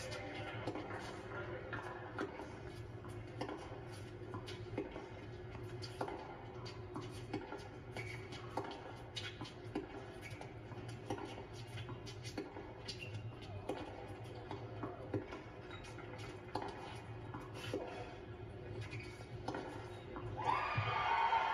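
A tennis rally heard through a television's speaker: racquets striking the ball about every second and a half, over faint crowd noise and a steady low hum.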